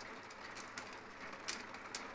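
Mahjong tiles clicking faintly as a player handles and places them on the table, with two sharper clicks in the second half.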